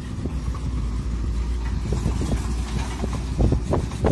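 Volvo FH semi-truck with a loaded lowboy trailer driving past on a dirt road: a steady, low diesel engine rumble.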